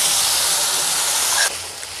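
Wet garlic paste sizzling as it hits hot oil and butter over frying onions in a stainless steel kadhai. The loud sizzle drops off suddenly about one and a half seconds in to a quieter one.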